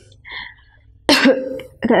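A woman coughs once, sharply, about a second in, after a short quiet pause.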